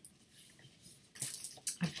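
Faint rustling and a few light taps from vinyl record sleeves and paper inserts being handled, the taps clustered a little past the middle.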